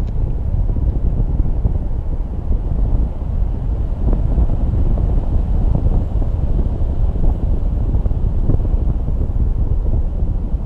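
Wind rushing over the microphone of a handheld camera during a paraglider flight: a loud, steady, gusting rumble with no distinct events.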